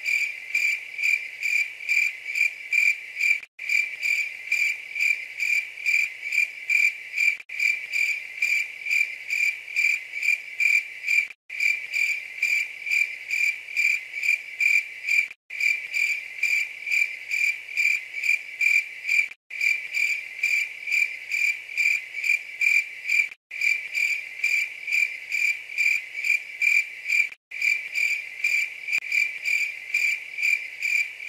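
Crickets chirping in a steady high-pitched pulse, about four chirps a second, with short dropouts every four seconds like a looped night-ambience track.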